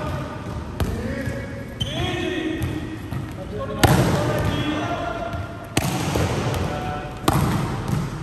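Volleyballs being spiked and slapping the court floor in a large echoing gym: five sharp smacks, the loudest about four seconds in, with players' voices calling out between them.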